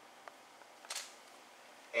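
Quiet room tone with a single short, sharp camera shutter click about a second in, and a fainter click just before it.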